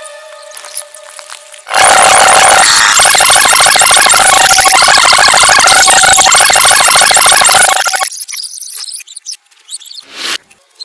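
A group of children shrieking and cheering, very loud, starting suddenly about two seconds in and cutting off about six seconds later.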